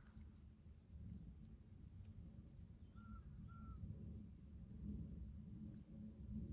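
Near silence: low room hum, with two faint short chirps about three seconds in.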